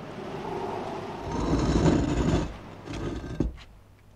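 Heavy stone slab grinding and scraping as it is dragged over the mouth of a tomb, loudest about halfway through. A shorter scrape follows, ending in a sharp knock near the end.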